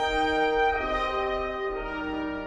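Brass ensemble playing slow processional music in held chords, the chord changing about every second.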